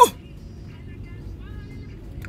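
Steady low road and engine rumble heard from inside the cabin of a moving car.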